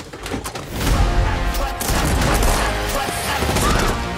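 Rapid gunfire from automatic rifles in an action-film soundtrack, layered over dramatic orchestral score.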